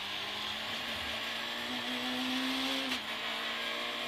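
Peugeot 106 A6 rally car's engine heard from inside the cabin, accelerating in third gear with its pitch rising. About three seconds in comes a quick upshift to fourth: a short click, and the engine note drops.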